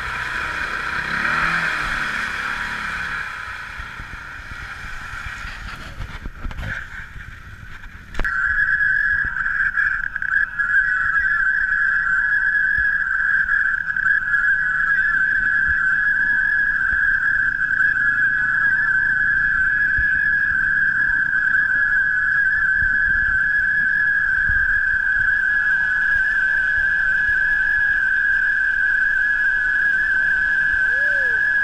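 A steady, high-pitched mechanical whine from an ATV stuck in a mud hole. It starts suddenly about eight seconds in and holds one pitch throughout. Before it comes a few seconds of churning water noise.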